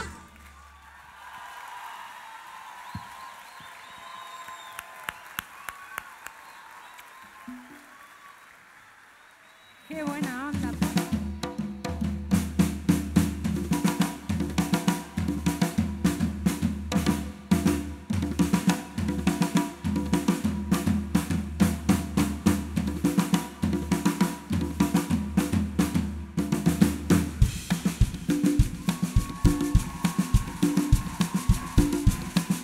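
Live band music: after a quieter stretch, a drum kit and bass start about ten seconds in and play a steady, driving beat.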